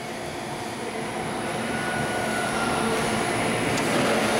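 Vincent screw press running steadily as it squeezes frac drilling cuttings: a steady mechanical drone that grows slightly louder, with a faint thin whine in the middle.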